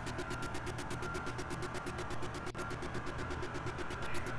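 A vehicle engine idling steadily, with a rapid even pulse of about ten beats a second.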